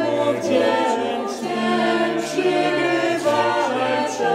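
Small mixed choir of men's and women's voices singing a Polish Christmas carol (kolęda) a cappella, the parts holding chords together.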